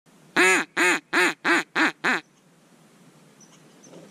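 Hand-blown duck call sounding six quacks in quick succession over about two seconds, each a little shorter and quicker than the one before.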